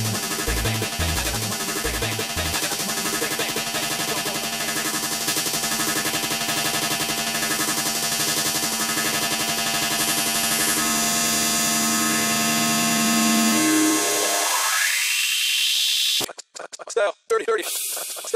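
Hard techno (hardtek) breakdown. The kick drum drops out a second or two in, leaving a sustained synth chord. A rising sweep builds near the end, then the sound cuts in and out in choppy stutters before the drop.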